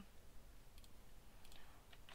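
Near silence with room tone and two faint clicks of a computer mouse, one a little under a second in and one about a second and a half in.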